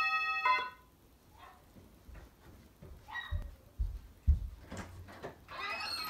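A short bell-like chime at the start, then a few dull thumps as the front door is opened, with voices coming in near the end.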